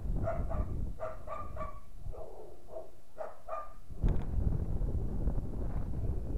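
A dog barking in a quick run of short barks for the first three and a half seconds or so, with wind rumbling on the microphone that gets louder after the barking stops.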